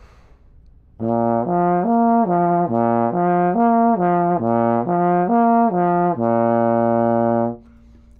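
Trombone playing a lip slur warm-up in first position: three notes, B flat, F and the B flat above, slurred up and down over and over without breaks. It starts about a second in and ends on a longer held note.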